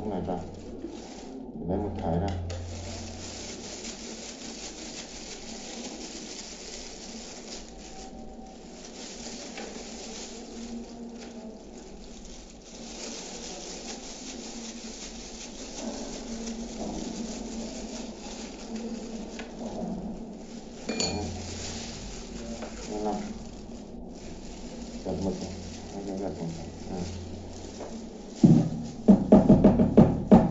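Plastic clicks and scraping as a laser toner cartridge is handled and prodded with a thin metal tool. Near the end comes a burst of loud, rapid knocking as a cartridge part is banged against a cardboard box.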